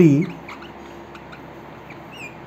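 Marker pen writing on a whiteboard: faint ticks and brief high squeaks of the felt tip on the board, after a spoken word trails off at the start.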